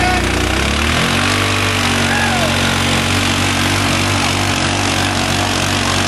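Yamaha Rhino side-by-side's engine running hard as the machine pushes through deep mud. The revs rise about a second in and then hold steady at the higher pitch.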